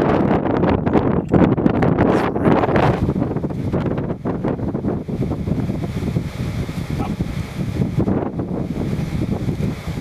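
Wind buffeting the microphone in gusts, strongest over the first three seconds, then settling into a steadier rush.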